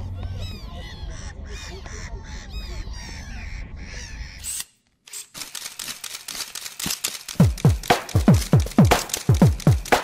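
Birds calling, many short arched calls in quick succession, over a low background rumble. About halfway through the sound cuts out, then electronic music starts, with a deep kick drum beating strongly from about seven seconds in.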